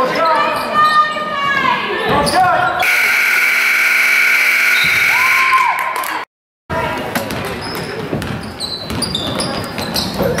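A gym scoreboard horn sounds steadily for about three seconds, starting about three seconds in, after a few seconds of shouting from players and crowd. The sound then drops out completely for half a second. After that, basketball dribbling, shoe squeaks and crowd chatter carry on.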